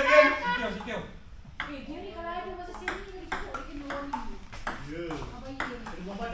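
Doubles table tennis rally: the ball clicks sharply off paddles and table in a quick back-and-forth, about two to three hits a second, starting about a second and a half in. Men's voices are loudest at the very start, with fainter voices under the rally.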